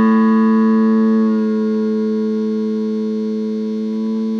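Open A string of an Epiphone Les Paul electric guitar ringing after a single pluck: one sustained note that slowly fades, its bright upper overtones dying away about a second in.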